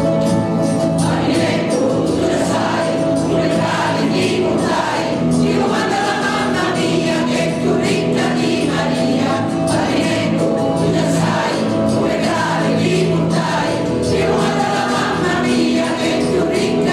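Amateur mixed choir of men and women singing a Christmas song over a recorded backing track, the voices coming in about a second in.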